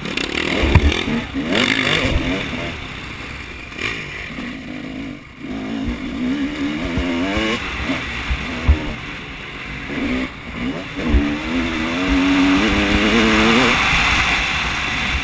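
Motocross dirt bike engine heard from the rider's helmet, revving up and falling back again and again as it accelerates and shifts around the track. Wind rushes over the microphone, and there are a few short low thumps.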